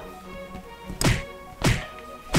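Two dull thumps about two-thirds of a second apart, the furry body of a plush toy knocking against the camera microphone, over background music.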